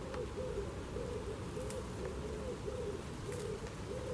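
A bird cooing: a steady run of low, soft, hooting notes that follow one another with hardly a break.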